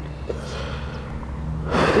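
A person drawing a sharp, audible breath near the end, with a fainter breath about half a second in, over a steady low hum.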